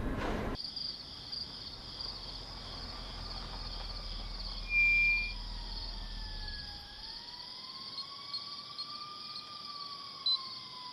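Night-time chorus of crickets chirping steadily, with one short, loud high tone about five seconds in and faint, slowly wavering tones beneath.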